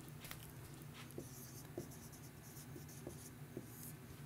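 Dry-erase marker writing on a whiteboard: faint, with a few short strokes and ticks.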